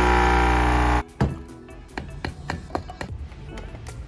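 Breville Café Roma espresso machine's pump buzzing loudly for about a second, then cutting off suddenly. Background music with a steady clicking beat follows.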